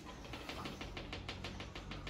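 A rapid, regular run of light clicks, about seven a second, starting shortly after the beginning and lasting about a second and a half.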